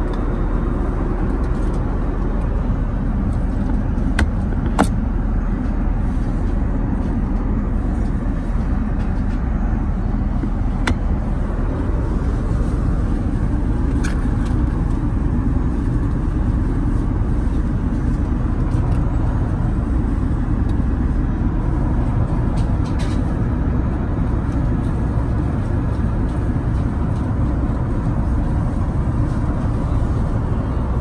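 Steady low rumble of an Airbus A380-800 cabin in flight: engine and airflow noise. A few short clicks stand out over it, the loudest about five seconds in.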